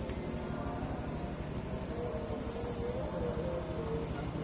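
Motorcycle engine idling close by: a steady low rumble. A faint wavering tone comes in over it about halfway through.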